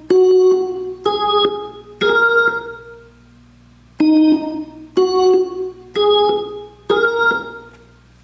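Hammond organ's upper manual playing a short rising figure of about four chords, one roughly each second, then the same figure again after a pause of about a second, each last chord left to fade. A steady low hum sits underneath.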